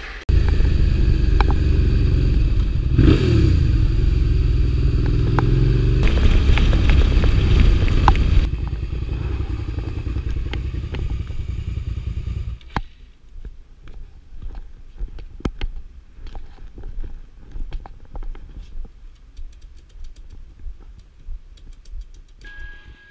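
Motorcycle engine running close to the microphone, rising and falling in pitch about three seconds in; it stops about twelve seconds in, leaving scattered clicks and rustling.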